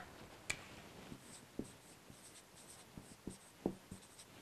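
Dry-erase marker writing on a whiteboard: faint, scattered short strokes and light taps as the letters are drawn.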